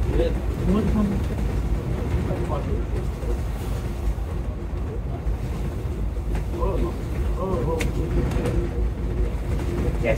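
Steady low rumble of a Volvo B9TL Wright Eclipse Gemini double-decker bus on the move, heard inside the upper deck, with faint voices murmuring in the background.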